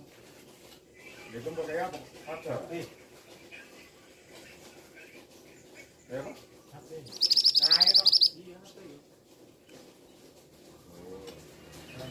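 A male scarlet minivet (mantenan) calling: one loud, high-pitched, fast run of repeated notes lasting about a second, about seven seconds in.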